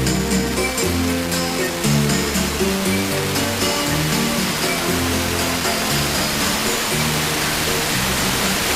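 Music from a distant FM radio broadcast, with notes and a bass line under a steady layer of hiss. The hiss is the noise of a weak long-distance signal received by sporadic E propagation.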